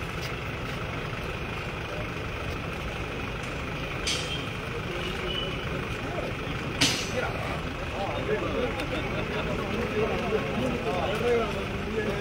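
A stationary ambulance's engine idling steadily under the murmur of a crowd, with two brief sharp noises about four and seven seconds in. Crowd chatter grows louder in the second half.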